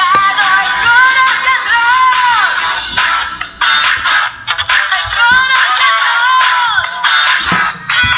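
Greek pop song: a woman singing long, sliding phrases over a full backing track.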